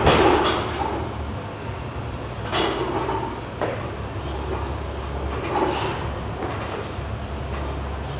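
Stacked iron weight plates on a viking press lever arm clanking and rattling several times as the arm is pressed up and lowered, over a steady low hum.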